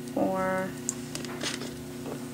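A woman's voice, held briefly on one pitch about a quarter second in, with a few faint small clicks of crystal beads being threaded onto copper wire. A low steady hum runs underneath.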